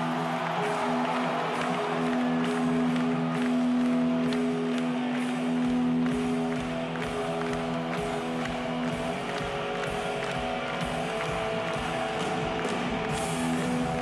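A live rock band playing, with electric guitars holding sustained chords that change about nine seconds in.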